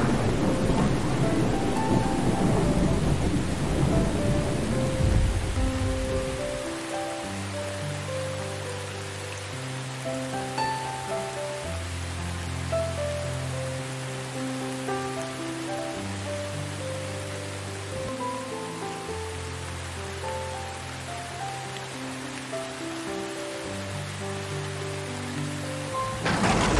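A long roll of thunder over steady rain, dying away about six seconds in. After that, steady rain continues under soft, slow music of long held notes.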